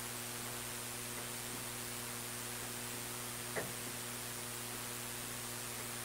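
Steady electrical mains hum with a hiss underneath, the room tone of the recording; a faint brief click about three and a half seconds in.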